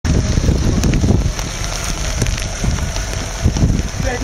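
Wind buffeting the microphone in irregular low gusts, strongest in the first second and a half, over the steady hiss of rain.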